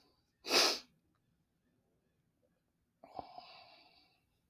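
A man sneezes once, a single short sharp burst about half a second in. A much fainter short sound follows about three seconds in.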